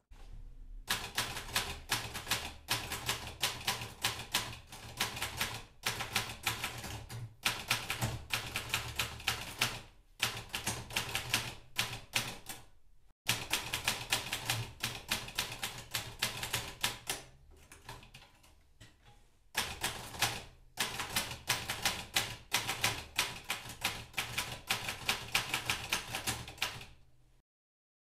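Typewriter keys clacking in fast, even runs of keystrokes, broken by a few short pauses.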